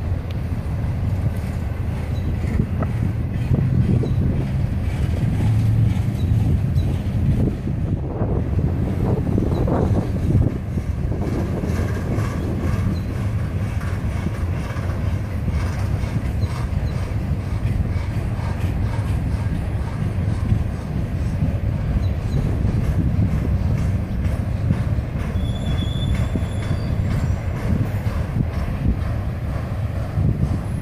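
Intermodal freight train of trailers and containers on flatcars rolling past, a steady low rumble of wheels on rail. A brief high squeal comes near the end.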